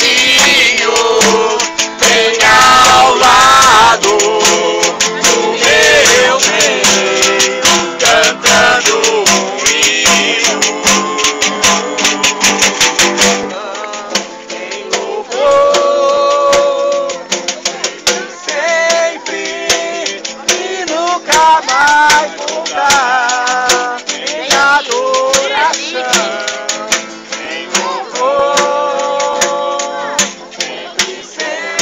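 Gospel music: voices singing a worship song with many sharp percussive clicks. The deep bass drops out about halfway through, leaving the singing lighter.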